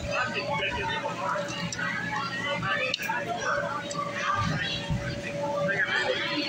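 Indistinct overlapping talk of children and adults in a room, with no clear words.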